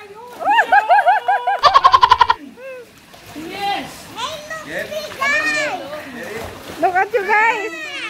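A splash about two seconds in as a small child drops into a swimming pool, with rhythmic calling voices just before it and excited children's and adults' voices after.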